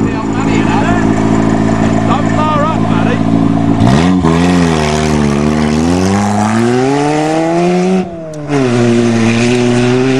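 Nissan Sentra's 1.6-litre four-cylinder engine idling, then revved hard about four seconds in as the car launches on loose dirt, its pitch climbing and wavering. The pitch drops sharply just after eight seconds, then climbs again.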